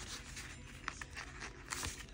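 Faint rustling of a paper sticker sheet being handled, with a few light clicks about a second in and again near the end.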